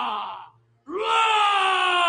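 A human voice giving two long, drawn-out wails, each sliding down in pitch at its end, the second starting just under a second in: a vocal imitation of the MGM lion's roar, following a parody studio intro.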